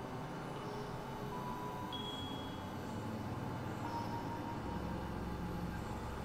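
Experimental synthesizer drone-and-noise music: a dense rumbling noise bed with sustained low tones that step to new pitches about three seconds in and again near five, while a few thin held tones sound briefly higher up.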